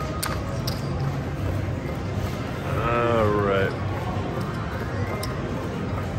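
Casino poker table: light clicks of casino chips being set down over a steady low background hum. About halfway through, a person lets out one drawn-out vocal sound, under a second long.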